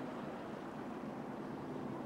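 Pack of NASCAR SuperTrucks running slowly under caution: a steady, fairly quiet wash of V8 engine noise as the trucks roll by.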